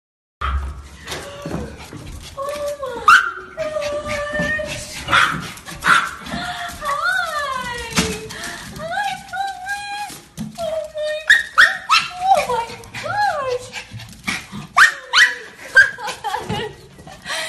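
Maltese dogs whining and yelping in high, sliding cries with a few short barks, the excited greeting of dogs jumping up at a person.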